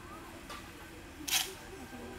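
A single short, sharp snap about a second and a half in, with a fainter click about half a second in, over a low murmur of background voices.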